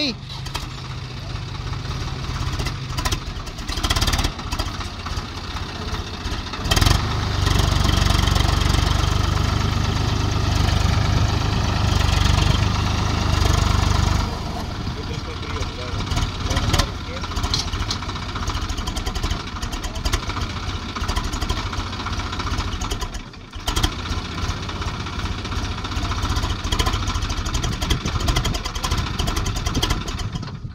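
Swaraj 744 XT tractor's three-cylinder diesel engine running while the tractor sits with its tyres sunk in sand. It is revved harder from about 7 to 14 seconds in, then drops back to a lower, steady run.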